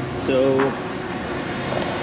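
A man's voice makes one short, level hum, like "mm", about half a second in, over steady background noise.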